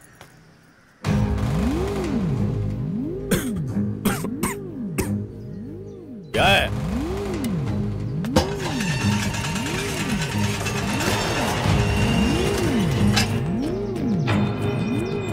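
Tense film background score: a low synth drone with a tone that sweeps up and down about once a second, punctuated by a few sharp hits. It starts about a second in, after a near-quiet opening.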